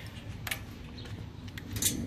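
A few light clicks and rattles from a bike cargo trailer's frame being handled, with a sharper click near the end.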